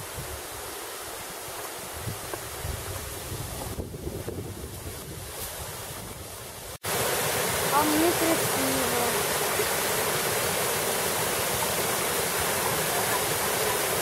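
The Caledonia waterfall, a small mountain waterfall, rushing loudly and steadily. It comes in suddenly after a cut about seven seconds in. Before that there is a quieter steady hiss with some wind on the microphone.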